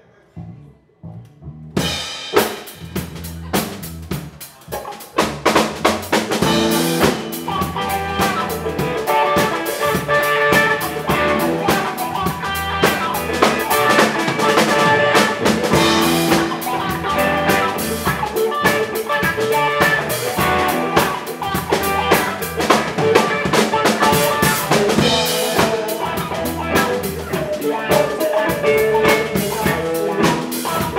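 Live rock band playing: electric guitars, electric bass and a drum kit. It starts quietly with only a low bass note, the full band comes in about two seconds in, and it grows louder a few seconds later.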